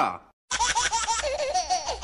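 High-pitched giggling laughter in quick repeated bursts, starting about half a second in after a short gap.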